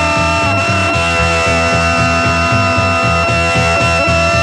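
Psychedelic rock recording in the late-1960s heavy psych and fuzzed garage style. A driving bass and drum pulse of about four beats a second runs under long held high notes.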